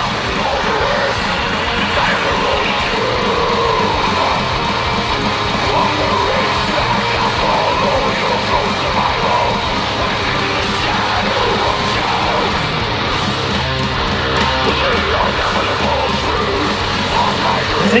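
Death-thrash metal song playing at full intensity: distorted electric guitars and drums.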